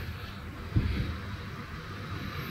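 A single soft, low thump about three-quarters of a second in, as a steel pot is set down on the gas stove, over faint background hiss.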